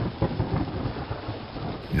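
Thunderstorm sound effect in a radio ad: steady rain with rolling rumbles of thunder.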